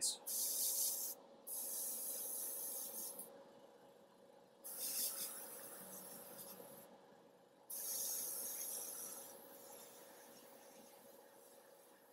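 Airbrush spraying paint in four bursts of hiss, each a trigger pull, broken by short pauses. The last burst fades away toward the end. A faint steady hum runs underneath.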